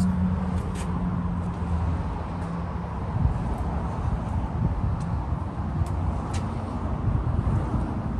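A low steady hum that fades after about three seconds, over a continuous low rumble of outdoor noise.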